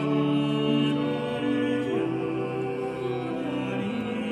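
Small mixed vocal ensemble singing 16th-century sacred polyphony, several voices holding sustained chords that shift about once a second, in a reverberant church.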